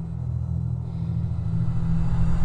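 A low, steady rumbling drone, a sci-fi film sound effect for the time-travel device powering up, growing slowly louder.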